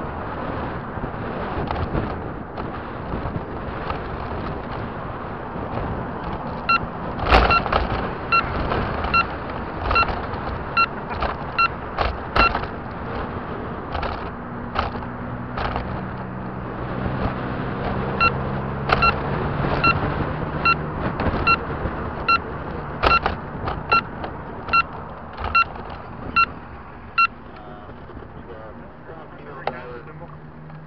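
Steady wind and road noise from a moving vehicle, with a turn-signal beeper sounding about every 0.7 seconds in two runs: one from about a quarter of the way in to the middle, and another through most of the second half. A low engine hum comes up around the middle.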